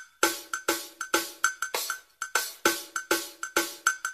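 Karaoke backing track of a Tamil film song playing its intro: a steady rhythm of sharp, ringing percussion hits, about four a second, with no singing yet.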